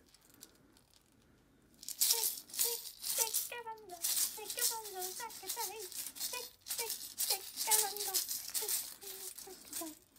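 Homemade shaker, a plastic egg filled with beads, buttons and bells and taped between two plastic spoons, shaken in quick repeated rattles starting about two seconds in. A child's voice sings along with the shaking.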